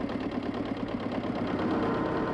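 Farm tractor's diesel engine running with a steady, fast, even chug. Near the end a steady higher tone comes in over it.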